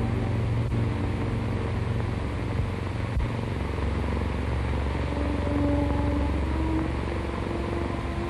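Brooding orchestral film score: deep held low notes with a few quieter sustained higher tones, over the steady hiss of an old soundtrack.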